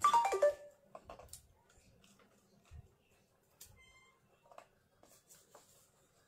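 Light handling of foam craft pieces on a work table: scattered soft taps and clicks as a doll's foam foot is put in place. About four seconds in there is a short electronic beep.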